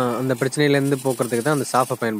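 A man talking, his voice rising and falling in quick phrases.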